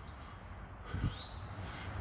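Steady high-pitched insect chorus, with a soft low thump about a second in.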